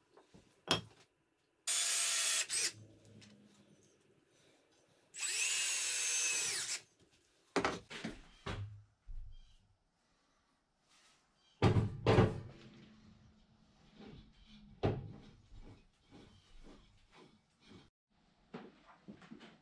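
Power drill driving screws to fasten a faceplate to a log: two short runs, the second slowing as it finishes. After them come scattered knocks and clunks of the heavy log being handled, the loudest thump about twelve seconds in.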